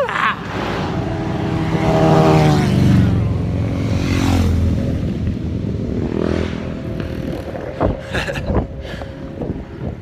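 A motor vehicle driving past, its engine note loudest about two seconds in and falling in pitch as it goes by. A fainter one passes around six seconds, and a few knocks follow near the end.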